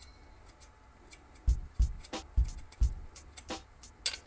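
A small hex key working a screw out of a metal headlight bracket: a run of light clicks and knocks, about eight of them, starting a second or so in.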